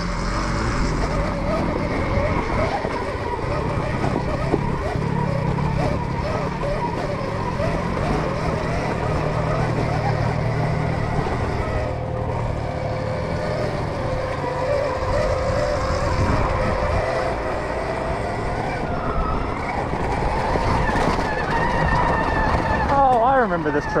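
Stark Varg electric dirt bike under way on a dirt trail: the electric motor's whine rises and falls with the throttle over a steady low rumble.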